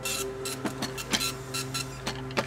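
Garment factory machinery running: a steady machine hum with irregular sharp mechanical clicks.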